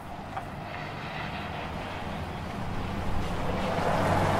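A car engine running with a steady low hum that grows gradually louder.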